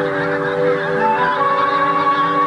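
Geese honking over orchestral music that holds sustained chords.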